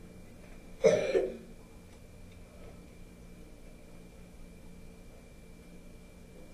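A single short cough about a second in, then quiet room tone with a faint steady hum.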